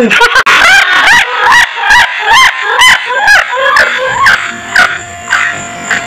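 Chicken clucking loudly in a quick run of repeated calls, about two or three a second, dying away after about four and a half seconds.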